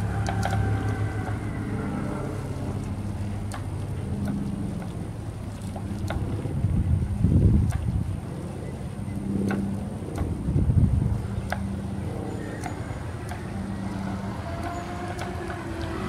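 Hoveround MPV5 power chair's heavy-duty drive motors running with a steady low hum as it drives on concrete. Wind gusts on the microphone about seven and about ten and a half seconds in are the loudest moments.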